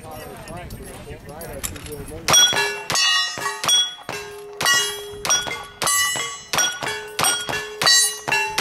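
A fast string of about ten gunshots, each followed by the short metallic ring of a struck steel target, starting about two seconds in after some talk.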